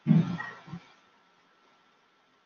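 A man's short wordless vocal sound, under a second long, right at the start, followed by near quiet.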